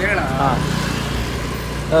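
A vehicle engine running close by in street traffic, a steady low hum, with a short spoken phrase at the start.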